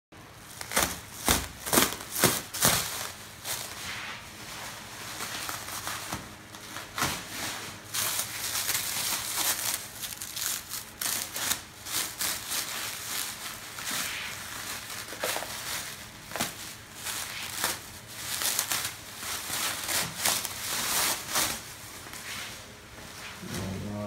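Plastic wrapping being pulled and crumpled off a machine, crinkling throughout, with a few sharp, loud crackles in the first three seconds.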